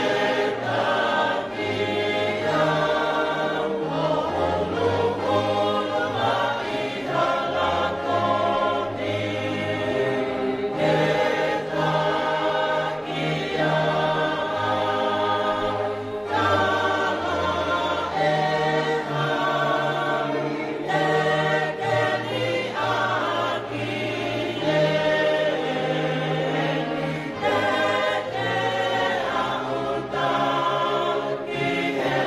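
A congregation singing a hymn together: many voices in harmony over held low bass notes that move every second or two.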